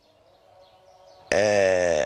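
A man's voice: a short pause with faint background noise, then from about a second and a quarter in, one long drawn-out vowel held at a steady pitch, a hesitation sound before he goes on speaking.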